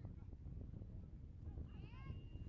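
Wind rumbling on the microphone throughout, with a high-pitched wavering call near the end: it rises and falls in pitch, and a thin steady tone runs under it for about a second.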